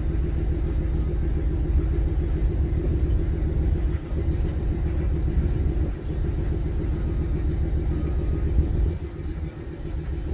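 An engine running steadily at constant speed, a low even hum with a few brief dips in level.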